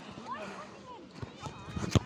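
Children's voices shouting and calling across a grass football game, with a few thumps, the loudest just before the end.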